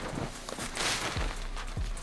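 Packed snow crunching and shifting under boots and gloved hands, with one louder crunch about a second in, over a quiet background beat with a deep kick drum.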